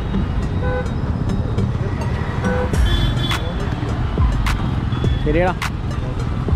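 Busy city road traffic: engines and tyres of cars, scooters and auto-rickshaws running steadily, with short vehicle horn beeps about a second in and again about two and a half seconds in.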